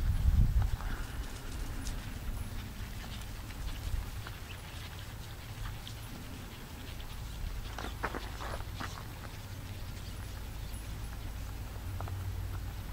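Faint hoofbeats of a bay racking horse gaiting across a grass field under a rider, over a steady low rumble that is loudest in the first second. A cluster of sharper hits comes about eight seconds in.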